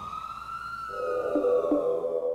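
A siren wails in one slow rise and fall, fading out. Synthesizer music with a steady pulsing note comes in about a second in.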